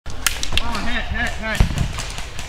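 A scattered series of sharp pops from airsoft guns firing, with one louder thump about one and a half seconds in. A person's voice calls out between the shots.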